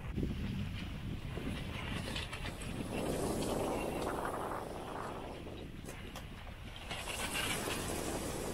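Steady rushing of wind and water aboard a small sailboat running under a spinnaker in light wind. It swells about three seconds in and eases off a few seconds later.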